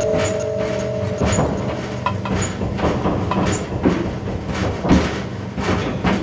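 Electronic instrumental music built on mechanical, clattering percussion with a high tick about once a second. A sustained two-note synth tone stops about a second in.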